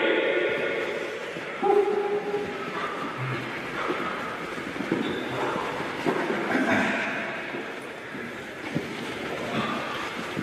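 A group of boxers doing a footwork drill on a hall floor: many feet shuffling and stamping in a continuous clatter, with occasional shouts and calls from the squad.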